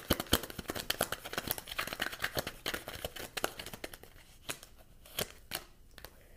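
A deck of cards being shuffled by hand: a rapid run of papery card clicks that thins out to a few separate snaps near the end.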